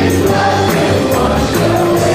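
A live gospel worship song: a man and a woman singing together into microphones, backed by piano, bass and drums, with steady cymbal or percussion hits keeping the beat.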